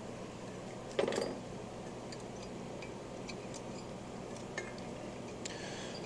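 Faint, scattered light clicks and clinks of small carburetor parts being handled as a float is fitted onto the carburetor top, over a steady low hum.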